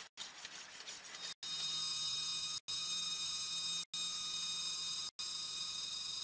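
A machete blade scraped back and forth on a stone, a rasping sharpening sound, for about the first second and a half. Then a steady rainforest insect chorus of several high, level buzzing tones takes over. The sound drops out briefly about every second and a quarter.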